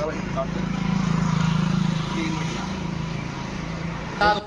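A steady low engine hum, loudest about a second or two in, with the faint chatter of a group of men behind it.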